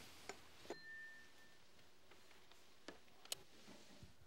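A spoon clinking lightly against a porcelain bowl of porridge, four small clinks in otherwise near silence. The second clink rings briefly.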